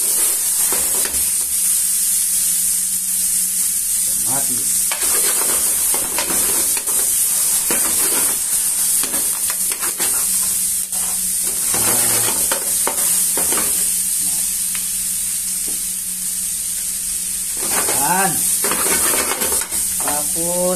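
Chopped tomatoes and onions sizzling hard in hot oil in a frying pan over a high gas flame. A metal spoon stirs them and scrapes against the pan again and again.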